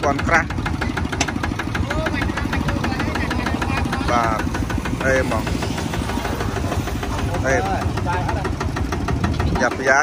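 Kubota ZT140 single-cylinder diesel engine on a two-wheel walking tractor idling steadily, with a rapid, even knock.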